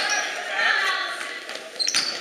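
Live sound of a basketball game in a school gym: a crowd of voices, with the ball bouncing on the hardwood court, echoing in the large hall.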